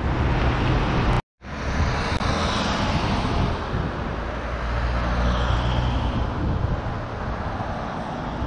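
City street traffic: car engines running and tyres on the road in a steady rumble, with the sound cutting out completely for a moment about a second in.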